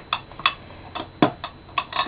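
Makeup cases and compacts being handled: about seven light clicks and taps, irregularly spaced.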